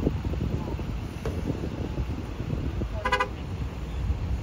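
A vehicle horn gives one short toot about three seconds in, over a steady low rumble.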